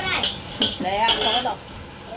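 Brief clinks of kitchenware near the start, followed by a voice talking through the middle.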